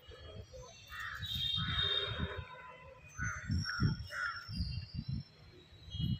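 Birds calling: several short, harsh calls, first about a second in and then in a run around three to four seconds in, with thin high chirps above them and a low rumble on the microphone underneath.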